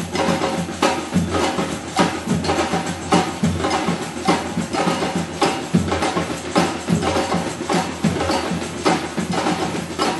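Street drumming band playing together: big bass drums, snare drums and many hand-held percussion instruments in a steady, driving rhythm. Strong accented beats come a little under twice a second, with deep bass-drum strokes about once a second under a dense clatter of sharp hits.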